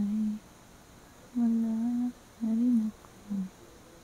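A woman humming a simple tune with her lips closed, close to the microphone, in short phrases: one ends just after the start, two longer ones follow with a small pitch bend in the second, and a brief last note comes near the end.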